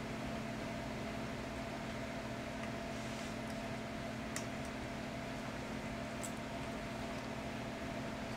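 Steady low electrical hum in a small room, with a couple of faint clicks of a fork against a plate, one about four seconds in and one about six seconds in.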